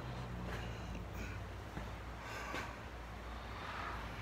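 A low, steady machine hum with a few faint small ticks and knocks.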